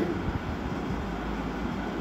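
A pause in speech filled by a steady, low background rumble with no distinct events.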